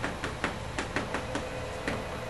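Marker writing on flip-chart paper: a quick run of short strokes, about four or five a second, that stops just before the end.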